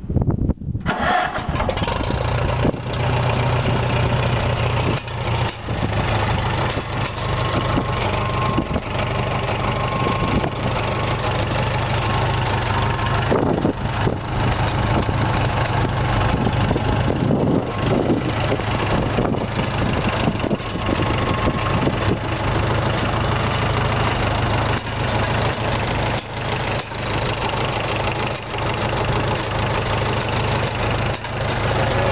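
A 1954 Farmall Super M-TA tractor's four-cylinder engine starting: it catches right at the start and settles about a second in into a steady idle, with small changes in pitch about halfway through.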